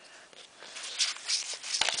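Rustling of a thin paper instruction booklet being picked up and handled, in short irregular bursts, with a small click near the end.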